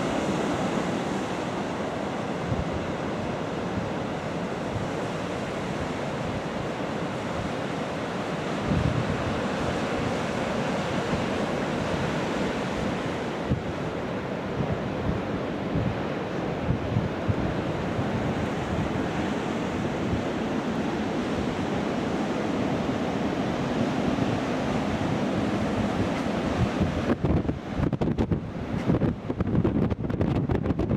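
Heavy surf breaking on a beach, a steady wash of waves, with strong wind buffeting the microphone in gusts. The wind buffeting turns choppier near the end.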